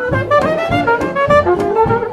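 Live jazz band playing: a wind instrument carries a sliding, sustained melody over plucked double bass notes and a steady beat.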